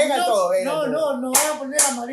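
A man's long, drawn-out yell celebrating a goal, with two sharp hand claps about half a second apart near the end.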